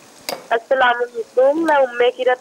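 Potatoes and cauliflower frying in oil in a wok, a faint sizzle, with a woman's voice over it from about half a second in.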